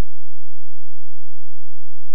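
Steady, unchanging low-pitched electronic tone, a single generated healing frequency held at a constant loud level.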